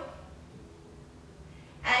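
Faint breathing of a woman exerting herself in an exercise hold, between spoken counts.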